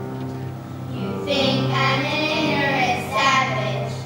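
A young girl singing over instrumental accompaniment with steady low bass notes; her voice comes in about a second in and carries the melody to near the end.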